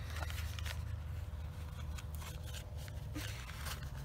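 Small cardboard box being handled and scratched with a ballpoint pen tip as a hole is worked into it: faint scattered scrapes and light clicks over a steady low rumble.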